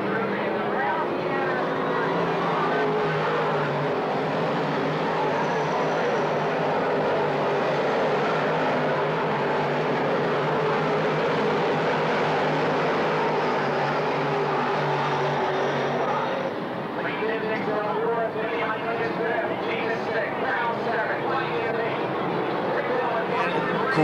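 A pack of dirt modified race cars' V8 engines running flat out together, a steady roar with held engine tones. About two-thirds of the way through it drops back and a man's voice comes in over the engine noise.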